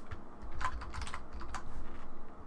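Typing on a computer keyboard: a quick run of keystrokes starting about half a second in and lasting about a second.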